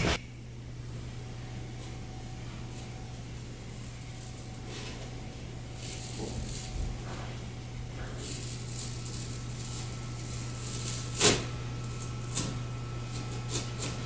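A steady low hum with faint scraping and a few short clicks, the sharpest about eleven seconds in, as a hand knife is pushed down through a thick sheet of case foam to start a cut.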